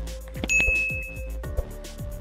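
Background music with a steady beat of quick ticking hi-hats and deep bass kicks. About half a second in, a bright ding rings out and holds for about a second.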